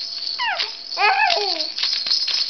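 A 16-week-old baby's two short, high squeals of delight, each falling in pitch, about half a second and a second in, over the steady shaking of a toy rattle.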